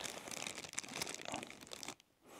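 Packaging crinkling and rustling in irregular small crackles as a small e-bike charger is handled in its cardboard accessory tray.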